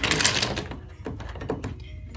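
Pencils, pens, a sharpener and other stationery swept by hand across a wooden desk, a loud clattering scrape in the first half second, then a lighter knock about a second and a half in.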